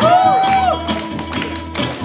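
Vietnamese đàn nguyệt (moon lute) plucking a melody whose notes bend and slide in pitch, over an acoustic guitar strumming chords.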